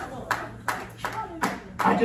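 Hand claps in an even rhythm, about five in two seconds, with a low steady tone underneath.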